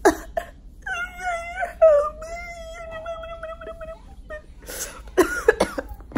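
A woman's high-pitched, drawn-out whine lasting about three seconds and wavering in pitch, a mock cry. It follows a short cough-like burst at the start, and a few short vocal bursts come near the end.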